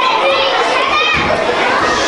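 A group of children's voices all at once, many young voices overlapping.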